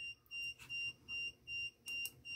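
An electronic beeper sounding short, high, evenly spaced beeps, about two and a half a second, with a faint click near the end.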